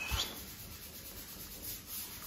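Faint, steady rubbing noise, with a soft knock right at the start.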